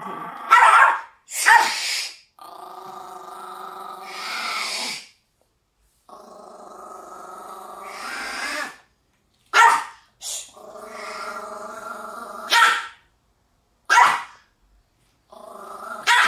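A Maltese barking and growling defensively while held in its owner's arms: three long growls that swell and then break off, with short sharp barks between them. This is fear aggression, a scared dog that acts fierce when held.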